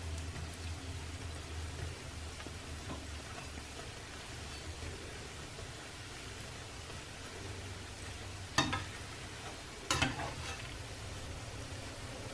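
Beetroot dough balls deep-frying in oil in an aluminium pan, a steady low sizzle. Two sharp clinks, most likely the metal slotted spoon against the pan, come about eight and a half and ten seconds in.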